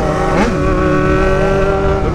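Yamaha XJ6 motorcycle's inline-four engine running loud and even at a steady cruise, heard from the rider's seat. A brief rise and fall in pitch comes about half a second in.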